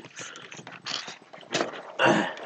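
Glossy program-book pages rustling as they are handled and turned, in a few short irregular rustles.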